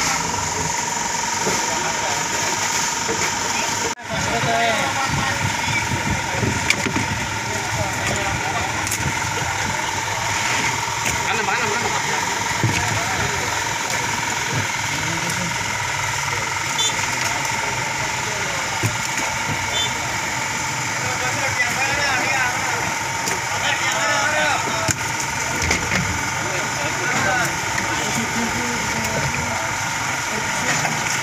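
An engine running steadily at idle, with a constant hum, under indistinct voices talking. The sound drops out briefly about four seconds in.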